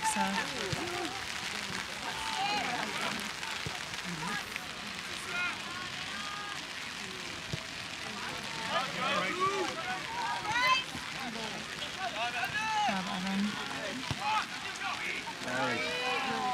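Scattered, indistinct calls and shouts from players and spectators across a soccer field, over a steady hiss of rain.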